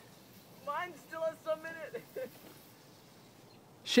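Faint, distant high-pitched children's voices calling out for a second or so, starting just under a second in.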